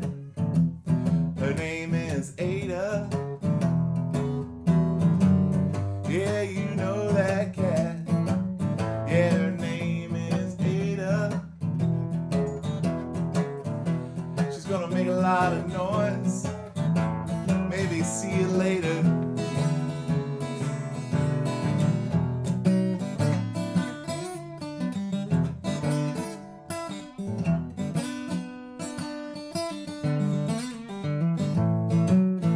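Steel-string acoustic guitar strummed in a blues, with a man's singing voice over it for roughly the first two-thirds. The last several seconds are mostly the guitar alone.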